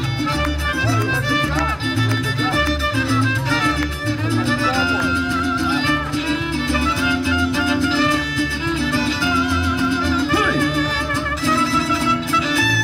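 A mariachi band playing live, with violins carrying a vibrato melody over a steady, rhythmic bass line.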